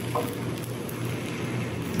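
Crêpe batter sizzling on the hot plate of an electric crêpe maker, a steady hiss, with a faint low hum underneath.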